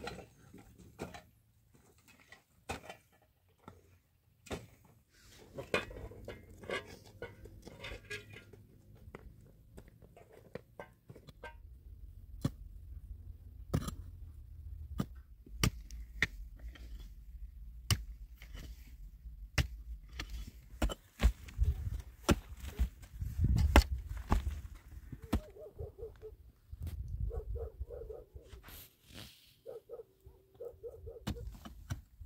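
A hand pick striking dry, stony earth again and again, sharp single hits a second or two apart, over a low rumble.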